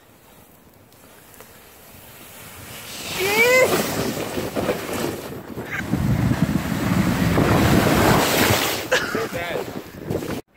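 Plastic sled sliding down snow toward the microphone: a scraping hiss that builds and turns loud from about three seconds in, lasting until near the end. A rider whoops about three seconds in and calls out again briefly near the end.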